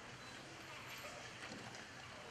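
Faint auditorium ambience: low murmur of voices with a few light, irregular knocks of stage gear being handled at the drum kit.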